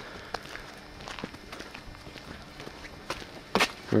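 Footsteps of someone walking on a paved drive, heard as a few scattered soft steps with a sharper one near the end.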